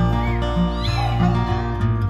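A kitten meowing, two short high calls about half a second apart near the start, over acoustic guitar background music.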